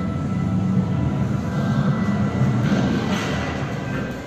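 Steady low mechanical rumble of a moving staircase set's drive turning the staircase, with faint music notes above it.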